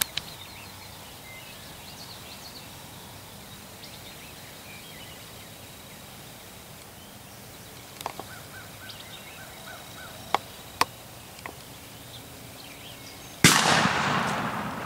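Faint field ambience with a few light clicks, then near the end a single loud shotgun blast whose echo fades over about a second and a half. It is the shot that drops a wild turkey gobbler.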